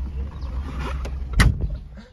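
Volkswagen MK1's engine idling as a low steady rumble heard inside the cabin, with one sharp knock about one and a half seconds in.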